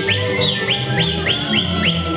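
Lively folk dance music with a high whistling line of quick upward-sliding notes, about three a second, over a steady low accompaniment.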